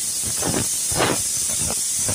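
Wet squelching of a hand mixing spice-marinated chicken pieces and sliced onions in a pot, in a few irregular squishes, over a steady high hiss.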